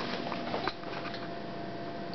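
A child handling and sipping from a plastic cup: a few small clicks and taps in the first second, then quiet room noise with a faint steady hum.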